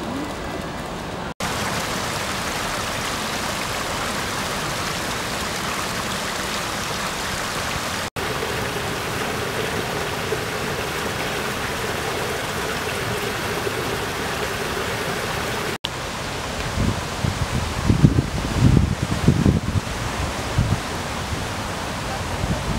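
Small waterfall spilling over a stone wall into a pond: a steady rush of water, broken by abrupt cuts a little over a second in, about eight seconds in and about sixteen seconds in. After the last cut the rush is quieter and irregular low rumbles come and go.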